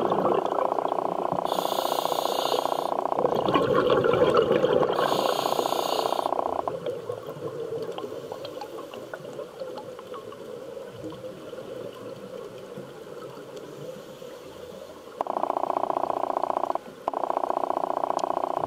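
Scuba diver's regulator breathing underwater: gurgling exhaled bubbles with two short hisses through the first six seconds or so, a quieter stretch, then two abrupt, steady breaths near the end.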